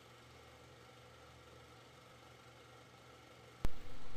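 Near silence, broken near the end by one sudden sharp click or knock.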